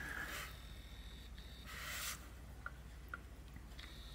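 Faint room tone with a steady low hum, a brief soft hiss about two seconds in, and two faint ticks shortly after.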